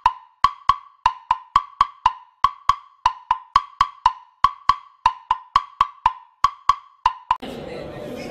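Title-card sound effect: a quick run of short, pitched wooden-sounding clicks, about four a second, keeping time with the text popping onto the screen; it stops abruptly near the end.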